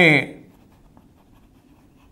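A man's spoken word trails off in the first half-second. Then comes the faint, irregular scratching and tapping of chalk writing on a blackboard.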